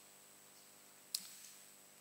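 Quiet room tone with a single short, sharp click about a second in.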